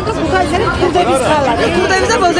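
Several people talking at once in Georgian, voices overlapping.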